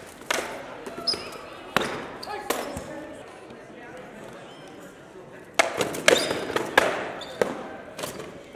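Rattan swords striking shields and armour in an SCA heavy-fighting bout: several sharp cracks in the first few seconds, a short lull, then a quick flurry of blows, all echoing in a large hall.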